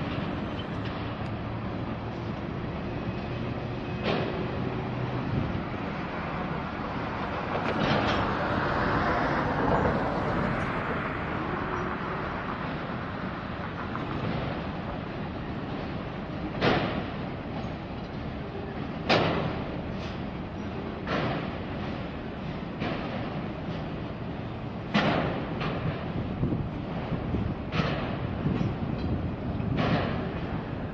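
Freight train cars rolling past with a steady rumble, broken by irregular sharp clanks, more frequent in the second half.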